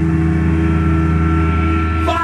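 Amplified electric bass and guitar holding a sustained, ringing chord: a steady, loud low drone. A thin higher tone comes in partway through, and the drone cuts off just after.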